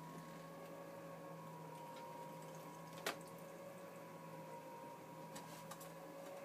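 Faint steady hum of an RV slide-out mechanism running as the kitchen slide-out retracts, with one sharp click about three seconds in.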